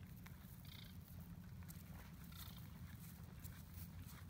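Quiet outdoor ambience: a steady low rumble, faint light clicks as a cast net with chain weights is gathered in the hands, and two brief high chirps, one under a second in and one about two and a half seconds in.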